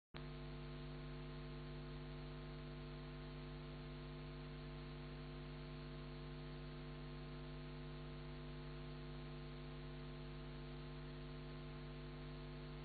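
Faint, steady mains hum over a low hiss from a record player's playback chain as the vinyl single spins, with no music playing.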